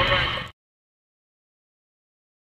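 The tail end of an air traffic control radio transmission over low outdoor rumble, cut off abruptly half a second in, followed by dead digital silence.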